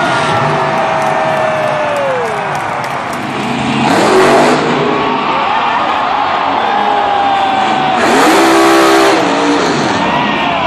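Monster truck engines revving, their pitch gliding up and falling away, over steady crowd noise. The sound changes abruptly about four seconds in, and a strong rev swells near the end.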